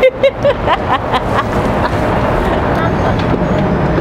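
Steady outdoor street-traffic noise, with voices and short laughs over it in the first second or so and a low hum growing stronger in the second half.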